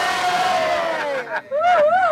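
Group of men cheering during a toast: one long held shout that falls away about a second in, followed by short excited voices.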